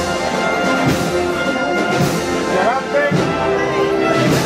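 Brass band playing a procession march, with brass instruments holding sustained notes.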